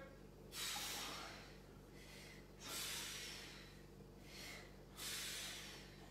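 Forceful breaths out, about four of them roughly two seconds apart, paced with dumbbell reps during a workout set.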